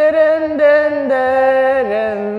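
A woman singing one long held note into a handheld karaoke microphone, the pitch stepping down about a second in and again near the end.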